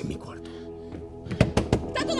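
Door handle and latch being worked, giving three quick metallic clunks close together near the end, over sustained soft background music.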